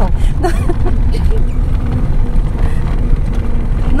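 Steady low rumble of a car's engine and tyres heard from inside the cabin, driving slowly over a rough, muddy, rain-wet dirt lane.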